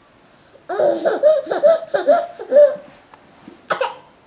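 A toddler laughing on the floor after tumbling head-first off a couch: a string of high-pitched laughs lasting about two seconds, then one short squeal near the end.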